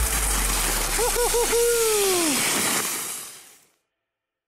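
A dog sled team running over snow makes a steady hiss. About a second in, a sled dog gives three quick yips and then one long falling howl. The sound fades out near the end.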